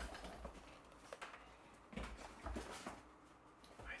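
Cardboard boxes of books being handled: a box lid lifted off and set down, with several soft thumps and knocks and cardboard rustling in between.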